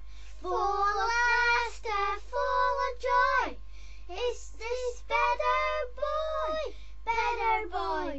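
A child's high voice singing a short tune in separate phrases, several of them ending in a falling glide.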